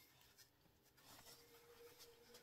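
Near silence: room tone with faint rustling as a knit shoe is handled.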